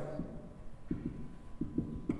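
Dry-erase marker writing on a whiteboard: a few soft, low knocks as the marker strikes and presses on the board, over a faint steady hum.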